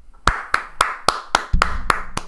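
A single person clapping hands in an even rhythm, about four claps a second.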